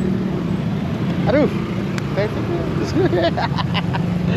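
Street traffic: a steady low hum of motorbike and vehicle engines, with short snatches of voices over it.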